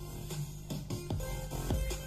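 Music playing through a FLECO F-232BT stereo amplifier fitted with an NForce 200 driver board, with percussive hits and short notes over a steady low hum. The hum is the amplifier's built-in hum, which the upgrade has not cured.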